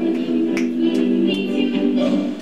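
Music for a stage musical number: held chords, with three sharp snaps on the beat about 0.4 s apart in the middle.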